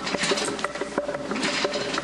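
Fast, irregular light clicking, several clicks a second, with a soft held tone underneath.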